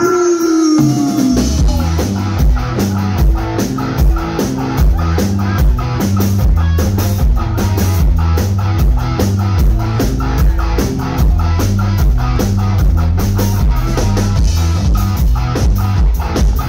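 Live rock band of electric guitar, electric bass and drum kit playing loudly. A held note slides down at the start, then the full band comes in with a steady driving beat and a pumping bass line.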